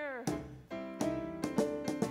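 A woman's sung note glides down and ends just after the start, then piano accompaniment plays sustained chords, with new chords struck about a second in and again near the end.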